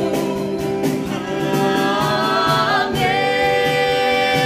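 Worship band performing live: several men's and women's voices singing together in harmony on long held notes, over keyboard and a softly struck cajón. The voices move to a new held chord about three seconds in.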